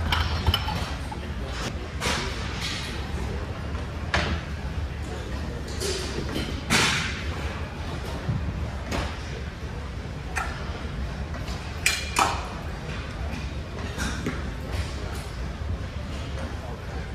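Gym weight equipment clanking: irregular, sharp metal knocks and clinks of plates and bars, a dozen or so, with the loudest near the start, about seven seconds in and about twelve seconds in, over a steady low hum in a large echoing hall.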